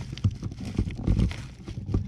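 A few irregular dull knocks and rubbing sounds from a hand working at the hose fitting on the back of a hot tub jet.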